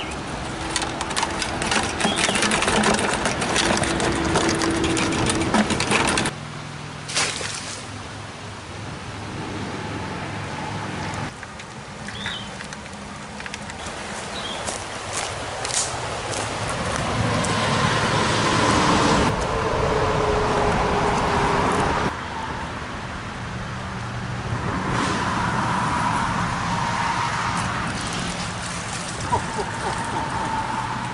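A wire-mesh crayfish trap is shaken out over a plastic bucket, and crayfish and wire rattle and clatter for about six seconds. After a few cuts, river water runs and splashes steadily.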